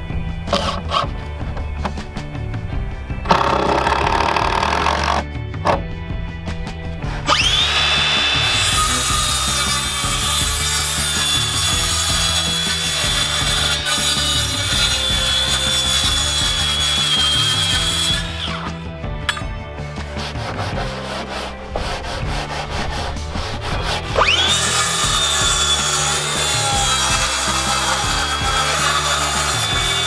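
Circular saw cutting through a thick wooden plank in two long runs: the blade whines up to speed and holds a steady high pitch while it cuts, stops, then spins up and cuts again near the end. Background music plays underneath.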